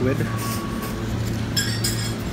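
Steady low hum of a small restaurant room, with a few short, bright clinks of tableware near the end.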